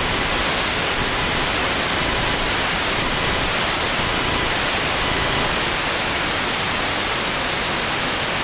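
Steady hiss of static from a wideband FM receiver (SDR) tuned to 66.62 MHz in the OIRT band, with no programme audio coming through. Faint thin whistles come and go in the middle.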